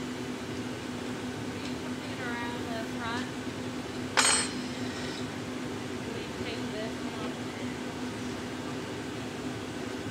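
Steady hum of a glassblowing hot shop with the glory hole reheating furnace running, broken by a single sharp ringing clink a little after four seconds in.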